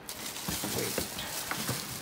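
Cardboard packaging rustling and scraping under the hands as the subwoofer is worked out of its box, with a few light knocks.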